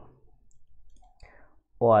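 Faint clicking from a computer mouse or pen input while writing on a digital whiteboard, in a short pause in speech. Speech starts again near the end.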